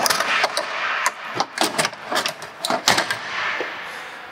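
Aluminium folding entry step of a travel trailer being pulled out and unfolded: a quick series of metal clacks and rattles that thins out near the end.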